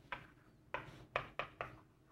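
Chalk writing on a chalkboard: a series of about five short, sharp taps and strokes as the chalk hits the board.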